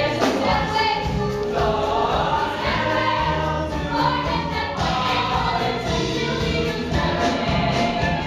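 A musical-theatre ensemble sings a show tune in chorus with live band accompaniment.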